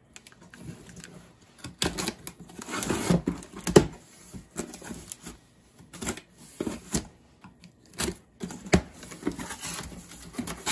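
Cardboard packaging being handled: a small knife cutting packing tape, then cardboard flaps and inserts scraping and rustling against the box, in irregular knocks and scrapes.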